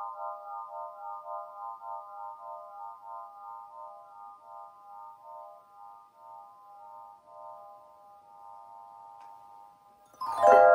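Svaram Air 9-bar swinging chime, its metal bars ringing on after being struck: several held tones sounding together, slowly fading, with a wavering pulse in loudness as the bars swing.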